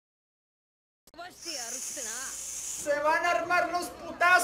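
A man's wordless vocal reaction. About a second in comes a hissing breath through the teeth with wavering pitch, and from about the middle on it turns into a louder, wavering, cry-like vocalising.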